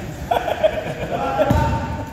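Pickup basketball in a gym, picked up by a phone's microphone: players' voices call out, and a basketball bounces hard on the hardwood floor about one and a half seconds in.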